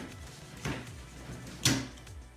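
Wooden spatula handle knocking down on the top of an aluminium soda can, three knocks a little under a second apart, the last the loudest, as it is driven at the lid to punch the can open.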